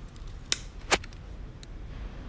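Thin clear plastic clamshell case clicking as it is pried open and handled: two sharp clicks about half a second apart in the first second, with a few fainter ticks.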